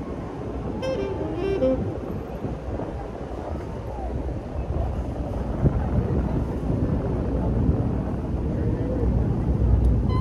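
Busy city street sound: many people talking over traffic, the low traffic rumble growing louder toward the end. A few pitched musical notes sound about a second in.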